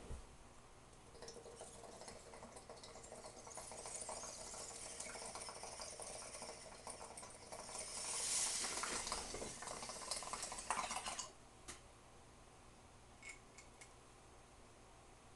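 Water bubbling in a glass bong as smoke is drawn through it. The bubbling is steady, grows louder about eight seconds in, and stops suddenly about eleven seconds in.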